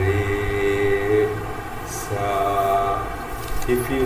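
A man singing Indian sargam syllables, unaccompanied voice holding each note at a steady pitch: two long held notes with a short break between.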